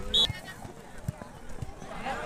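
A short, high blast of a referee's whistle just after the start, among the shouts of players and spectators, followed by two soft knocks.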